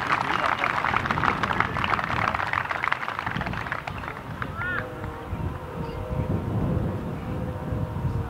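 Spectators clapping and cheering for a holed putt, the applause dying away after about three and a half seconds. After that it is quieter outdoors, with a faint steady hum.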